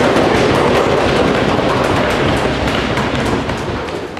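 An audience applauding, a dense patter of many hands clapping that slowly dies down toward the end.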